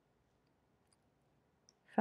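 Near silence: quiet room tone with two faint small clicks, then a woman's voice begins just before the end.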